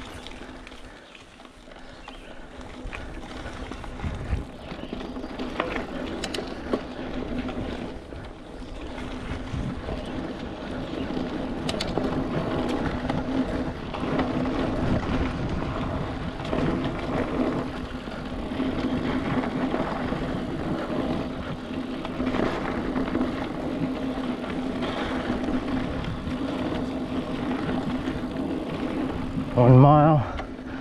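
Mountain bike riding along a dirt singletrack: tyre and drivetrain noise with a steady hum. The sound dips about a second in, then builds and holds as the bike picks up speed, with a few light knocks from the trail.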